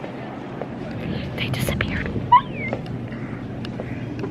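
Store ambience of indistinct background voices and rustling handling noise from a handheld camera, with scattered small clicks. A brief high sliding squeak, rising and then falling, comes a little past halfway.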